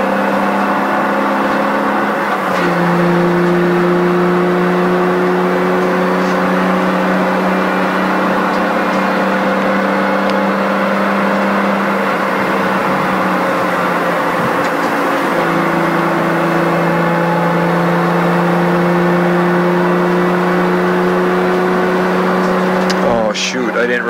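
BMW M2's turbocharged straight-six heard from inside the cabin while lapping a track, running at a fairly steady pitch. The engine note steps down and grows a little louder about two and a half seconds in, eases off briefly a little past the middle, then comes back steady.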